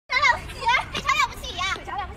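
Several high-pitched voices giving short excited shouts one after another, with no clear words.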